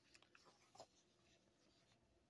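Near silence with a few faint paper rustles in the first second as a thin comic booklet is opened.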